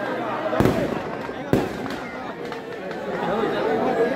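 Two sharp firecracker bangs about a second apart, from crackers bursting in a burning Ravan effigy, over a crowd shouting and chattering.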